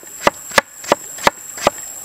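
Large kitchen knife chopping through a firm vegetable onto a wooden cutting board, each stroke a sharp knock, evenly paced at about three a second.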